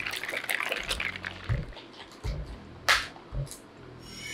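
Iced drink in a plastic cup being handled and sipped through a straw, with liquid and ice sounds. There are a few soft knocks and a sharp click about three seconds in.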